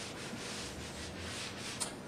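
A whiteboard eraser rubbing across a whiteboard in repeated wiping strokes, with a short click near the end.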